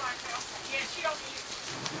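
Steady rain falling, an even hiss with a faint voice briefly in the background.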